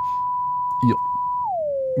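Test sine-wave tone held steady at 1 kHz, then gliding smoothly down an octave to about 500 Hz about a second and a half in. It passes through Auto-Tune Pro X with a 400 ms retune speed, so the pitch is not snapped to scale notes: the glide is smooth, with no steps.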